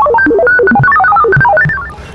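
A fast run of electronic beeps hopping up and down in pitch, about ten notes a second, stopping near the end: a beeping cartoon 'voice' standing in for a character's reply.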